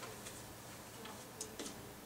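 Dry-erase marker on a whiteboard as CH3 is written: faint, with a couple of short, sharp ticks near the end as the marker meets the board.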